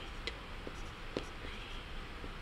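Pencil writing on paper: faint scratching with short, sharp taps as the letters are formed, several in quick succession.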